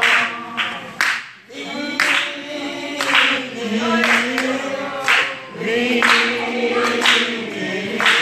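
A congregation singing a song together, many voices holding long notes.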